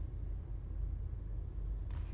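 Steady low rumble of a car's cabin background noise, with no distinct events.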